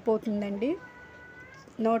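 A short, drawn-out voiced call that drops in pitch as it ends. It gives way to a faint, steady hiss with thin high tones from the sweets frying in hot oil.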